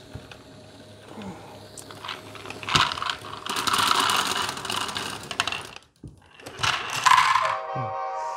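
Plastic Lego GBC balls poured from a Lego bin into a Lego input tray, rattling and clattering for about three seconds. A second, shorter clatter follows about a second later.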